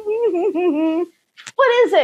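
A woman humming a wandering little tune with closed lips for about a second, then after a short pause a brief voiced exclamation near the end.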